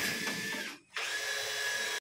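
A power tool running with a steady high whine, cutting out briefly a little under a second in and then starting again.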